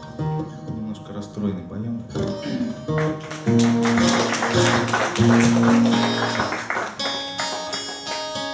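Twelve-string acoustic guitar playing live: lighter picked notes at first, then loud, fast rhythmic strumming from about three seconds in, ending on ringing chords near the end.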